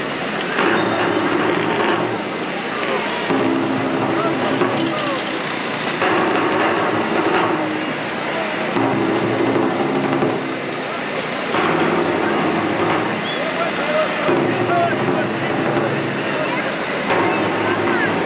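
Crowd chatter, with a band's slow held chords repeating about every two and a half seconds, each held for about a second and a half, typical of the funeral-march music that accompanies a Guatemalan Holy Week procession.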